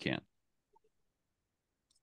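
A man's voice finishing a word, then near silence with a faint click near the end.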